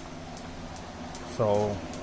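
A steady low background hum, with one short spoken syllable from a man's voice about one and a half seconds in.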